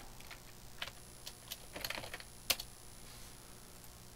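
Computer keyboard key presses: a few faint, scattered clicks, the loudest about two and a half seconds in, as code is copied and pasted.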